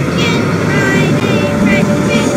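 Several soundtracks playing over one another at once: logo-animation jingles and effects clashing with a children's song, a loud, dense jumble with wavering pitched voices over a low rumble.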